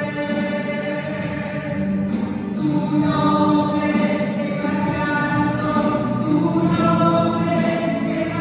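Choir singing a slow hymn with music, long held notes that change pitch every second or so.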